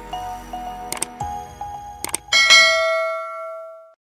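A short music sting with two sharp clicks, about one and two seconds in, then a bright bell-like chime about two and a half seconds in that rings on and fades away.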